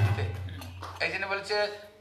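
The end of a devotional call-and-response chant: the singing stops and the ringing and low hum of the accompaniment die away over the first second. Then a man's voice starts.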